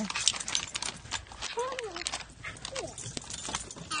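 Dogs' claws clicking and tapping on wooden deck boards as excited dogs move about for treats, with a brief pitched vocal sound near the middle.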